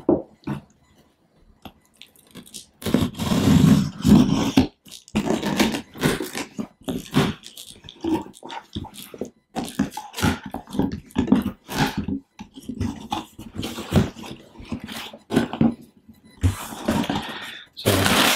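A cardboard shipping box being opened: a knife slitting the packing tape and the flaps being pulled open, in a string of irregular rasps and scrapes starting a few seconds in. Packing paper crinkles near the end.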